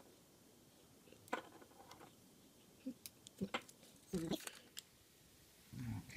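Light clicks and taps of a small plastic hexacopter frame being handled and turned over in the hands, a single click about a second in and a small cluster of sharper clicks in the second half.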